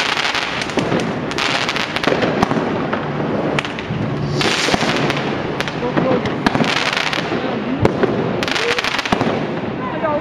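Fireworks and firecrackers going off all around in quick succession: a continuous crackle of bangs and pops, with a few stretches of hissing.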